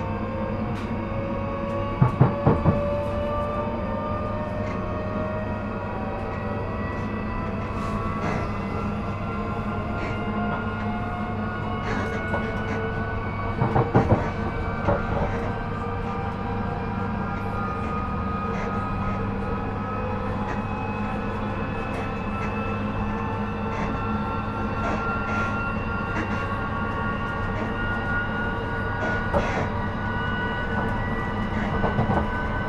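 Class 458/5 electric multiple unit at speed, heard from inside the carriage: steady running rumble with a traction motor whine that slowly rises in pitch as the train gathers speed. The wheels clatter over track joints in a quick burst of knocks about two seconds in and again around fourteen seconds.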